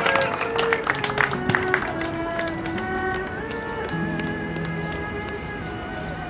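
Erhu (Chinese two-string bowed fiddle) playing a slow melody of long held notes that slide from one pitch to the next. A scatter of sharp clicks sounds over the first two seconds.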